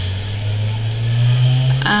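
Low, steady electric motor hum that slowly rises in pitch.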